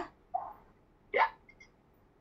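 Two brief non-speech vocal sounds from a person: a soft one just after the start, then a sharper, louder one about a second in that sweeps up in pitch.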